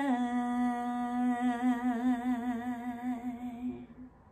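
A woman's unaccompanied voice holding the song's final note: one long note with a vibrato that widens as it goes, fading and stopping just before the end.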